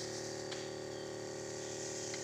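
Pesticide sprayer running: its pump motor hums steadily while the long lance throws a fine mist with a faint hiss.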